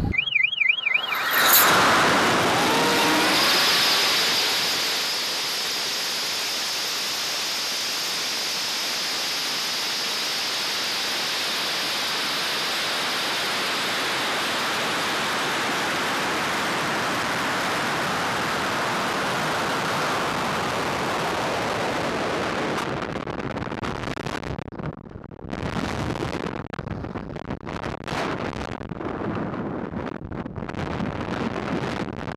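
Audio from a camera mounted on a high-power rocket in flight. A sudden loud rush starts about a second and a half in, then a steady rushing hiss of the climb runs for about twenty seconds before breaking up into gusty wind buffeting on the microphone.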